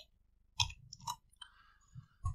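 A few faint short clicks about half a second apart, then a brief soft hiss near the end.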